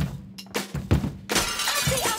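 Trailer music with a few drum hits, then a sudden burst of glass shattering a little past halfway, its crackle hanging on briefly.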